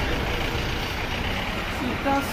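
Steady low rumble of a running motor vehicle engine.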